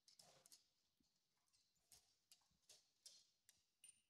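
Very faint sounds of a corgi searching a laminate floor by nose: short sniffs and light ticks, coming irregularly about every half second.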